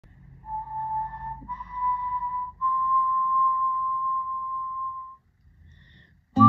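A person whistling a slow melody of three sustained notes, each a little higher than the one before, the last held for about two and a half seconds before it stops.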